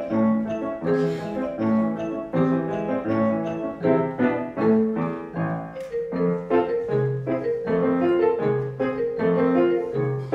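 Grand piano played as a four-hand duet: a brisk piece of short, evenly pulsed notes over a bouncing bass, which moves lower about seven seconds in.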